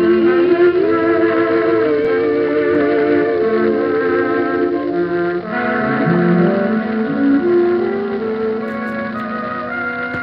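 A 1930s dance orchestra playing a slow song: a sustained melody with wide vibrato over held chords, then a lower held chord in the second half. The sound is of an old shellac recording, dull and cut off at the top.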